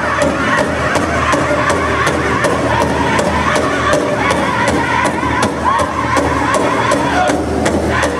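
Powwow drum group singing in high voices over a big drum struck together in a steady beat, about three strokes a second.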